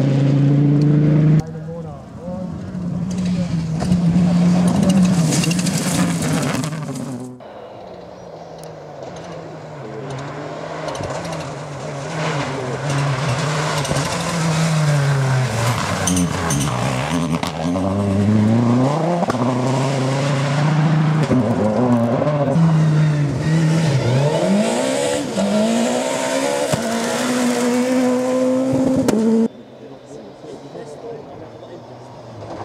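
Rally cars racing on a gravel stage, engines revving hard with the pitch falling and climbing again several times as the drivers lift off and accelerate through the gears, over the hiss of tyres and gravel. Midway a Mitsubishi Lancer Evolution rally car goes by, its engine dipping and then rising steeply in pitch.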